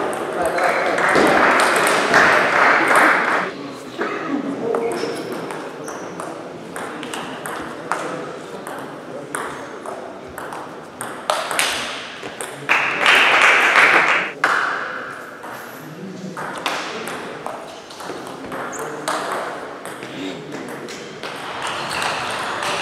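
A table tennis rally: the ball clicking sharply off bats and table in an irregular back-and-forth, with voices in the hall.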